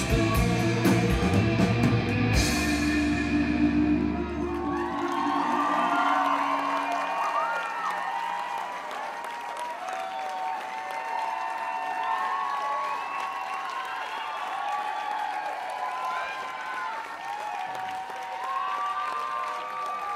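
A rock band plays the last bars of a song, ending on a cymbal crash about two seconds in, with the final chord dying away by about five seconds. A concert audience then cheers and applauds.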